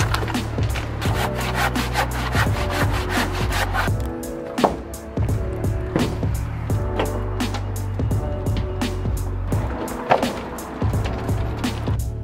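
Old timber boards being prised and torn off a roof edge: wood creaking and splintering with repeated sharp cracks and knocks. Background music plays underneath.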